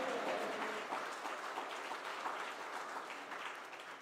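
A congregation applauding, the clapping slowly dying away toward the end.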